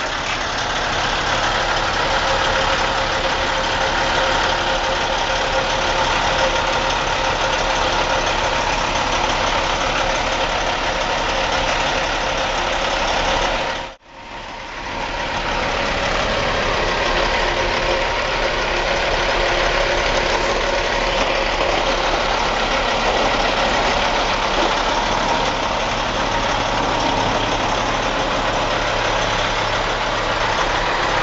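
Heavy diesel engine running steadily at idle. The sound cuts out abruptly about halfway through, then fades back in over a couple of seconds to the same steady running.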